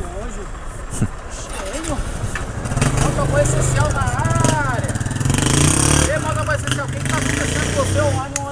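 A motorcycle engine running close by, its low rumble coming in about two seconds in and growing louder, with people talking over it.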